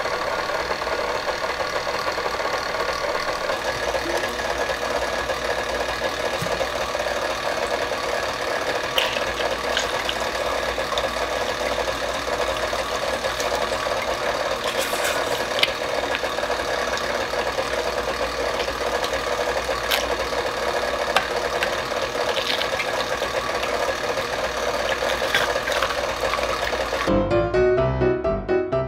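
KitchenAid stand mixer motor running steadily at low speed, driving a generic food strainer attachment as blackberries are pushed through it, with a few faint clicks. Piano music comes in near the end.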